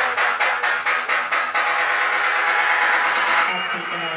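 Electronic dance music playing loud through a club sound system, with a fast, even ticking beat of about four to five strokes a second. The ticks drop out about a second and a half in, leaving a held mid-range sound.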